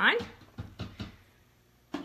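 A few light clicks and knocks from an Instant Pot lid being set on and fitted to the pot, in the first second, then a quiet stretch.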